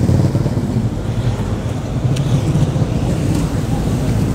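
Roadside traffic: a steady low engine rumble from vehicles on the street.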